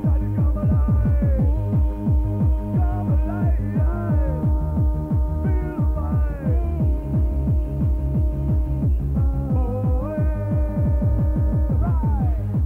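Fast electronic dance music from a cassette recording of a live DJ set: a rapid, pounding kick drum under a held synth tone, with short sliding synth notes above.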